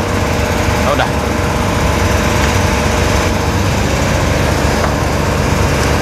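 A machine running with a steady, even drone: a low hum with a faint steady tone above it.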